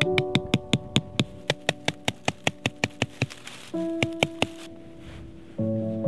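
Quick, evenly spaced metallic taps of a Susa MH-1 hammer driving a tent peg into the ground, about five strikes a second, thinning out and stopping about four and a half seconds in. Soft piano music plays underneath.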